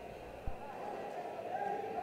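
Quiet arena ambience with a single dull thump about half a second in, then a faint distant voice calling out.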